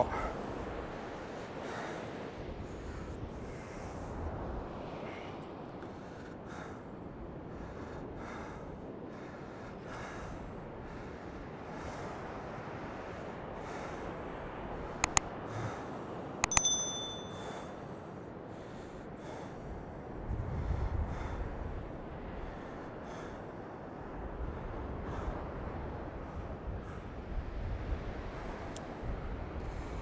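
Steady wash of surf breaking on the shore, with low wind rumble on the microphone now and then. About halfway through come a couple of sharp clicks and then a short bell ding, a subscribe-button sound effect.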